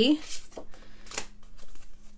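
Small cardstock journaling cards being handled and shuffled by hand: a series of short, dry paper flicks and rustles, several a second.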